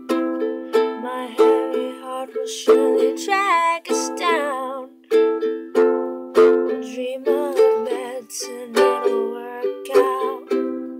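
Ukulele strummed in a steady rhythm, about three chord strums a second, in a small room.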